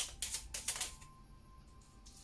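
A deck of oracle cards being shuffled by hand: a quick run of papery clicks and flicks over about the first second, then only a faint steady tone.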